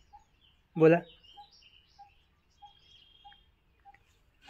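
Birds calling faintly: a short low note repeated steadily about every half second, with scattered higher chirps and a brief high trill about three seconds in.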